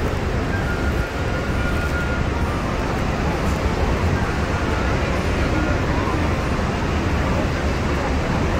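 Steady roar of the Horseshoe Falls heard from a boat close below the falls, an even rushing noise over a deep low rumble.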